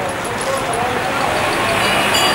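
Indistinct background chatter of several voices over a steady noisy hum of a busy hall, with a faint low drone throughout.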